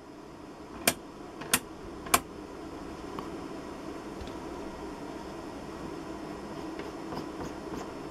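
A rotary band-selector switch clicking through its detents: three sharp clicks about 0.6 s apart, each a step to another frequency band. After them a steady low background noise with a few faint ticks.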